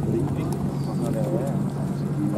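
A pair of horses trotting with a carriage, their hooves clip-clopping, while a voice talks.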